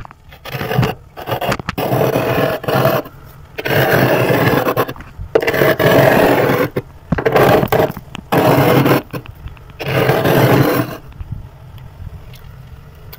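Big spoon scraping thick, flaky frost build-up off a freezer wall: a series of long, loud scraping strokes, each lasting a second or so, with short pauses between them.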